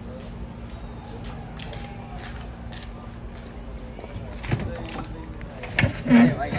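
Indistinct voices of people talking at a distance over a steady low hum, with two sharp knocks in the last second and a half.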